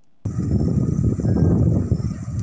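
Wind buffeting the microphone: a loud, uneven low rumble that cuts in suddenly about a quarter second in.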